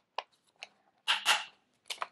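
Handheld single-hole punch squeezed through a stack of folded paper sheets: a brief crunching snip about a second in, with small clicks of the punch and paper before it.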